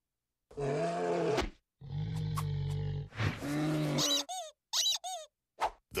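Cartoon comedy sound effects: three drawn-out vocal grunts and groans, as of a bear hug squeezing someone, followed by two quick bursts of high squeaks.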